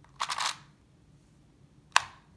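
Rubik's Clock puzzle being worked by hand: a quick run of clicks from a wheel turning through its detents, then a single sharp, louder click near the end.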